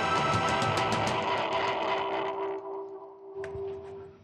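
Live rock band playing the end of a song: electric guitar and drums play on, then thin out after about two seconds, leaving a single held note ringing out.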